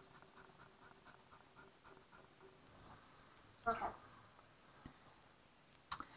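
Faint rubbing of a pencil eraser on a paper worksheet, as zeros are erased. A brief murmur comes about two-thirds of the way in.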